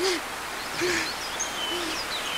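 Jungle ambience: a bird's low hooting call, repeated three times at a little under a second apart, with higher bird chirps and whistles over a steady background hiss.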